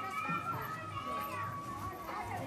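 Indistinct background voices, children's among them, with a long steady high-pitched tone that holds until about one and a half seconds in.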